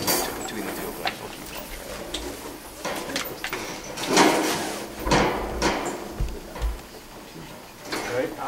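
Handling noises from equipment being adjusted: several short scrapes, rustles and knocks, the loudest about four seconds in.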